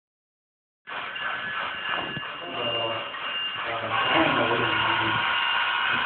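Indistinct voices talking in a large room over a steady high-pitched hum. The sound cuts in about a second in.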